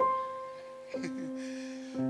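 Sustained single notes played on a musical instrument: a high note sounds and fades, an octave-lower note enters about a second in and is held, and a lower note joins near the end. They are sounded as the C note of the tuning illustration.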